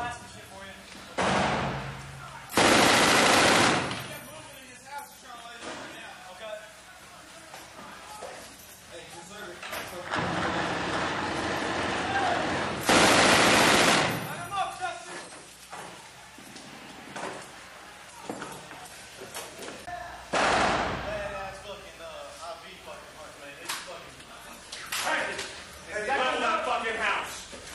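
Belt-fed M240 machine gun firing in several bursts indoors, the longest lasting over a second, with quieter gaps between bursts.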